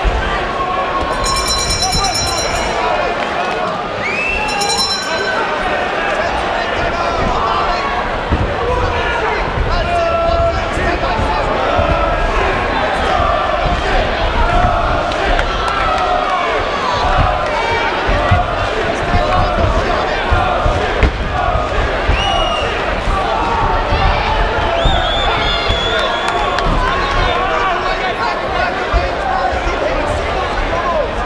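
Boxing crowd shouting and cheering, with scattered thuds from the ring. Two short high-pitched ringing tones sound in the first few seconds.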